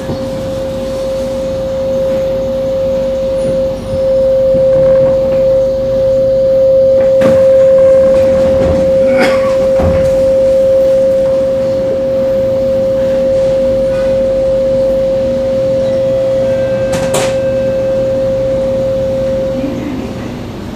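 Steady, high-pitched electrical whine from an MRT train's onboard equipment, held at one pitch while the train stands on the elevated track, with a low rumble beneath and a few sharp clicks; the whine cuts off suddenly near the end.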